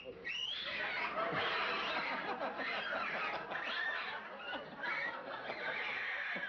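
Shrill shrieking and screaming, many overlapping high-pitched cries, continuous and loud.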